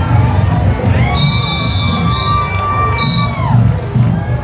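A marching band drumline plays a fast cadence while a crowd of parade spectators cheers and shouts. A long high-pitched yell rises about a second in and falls away near the end. Short shrill whistle toots sound over it.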